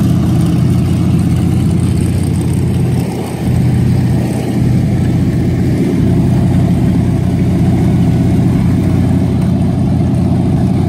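Twin carbureted inboard engines of a racing boat idling steadily through open through-transom exhausts that spit cooling water, with a brief dip in level about three seconds in.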